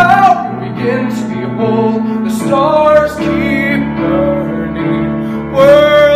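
Musical-theatre duet sung live over piano accompaniment, with long held sung notes above steady chords; the loudest held note comes near the end.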